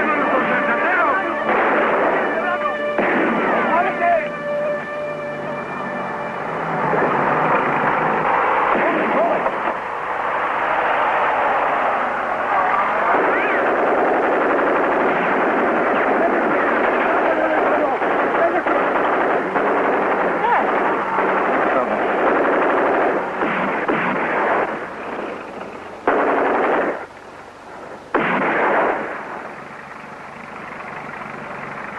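A film gunfight soundtrack: dense gunfire, many shots in quick succession almost throughout, breaking off briefly twice near the end. Music sounds under the first few seconds.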